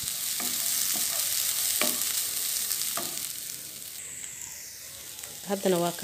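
Minced meat sizzling in a hot non-stick frying pan while it is stirred with a wooden spoon, with a few short scraping strokes. The sizzle grows quieter in the second half.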